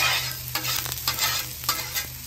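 Dry rice and diced onion toasting on a Blackstone steel flat-top griddle, with a spatula making several scraping strokes through them across the griddle top over a light sizzle.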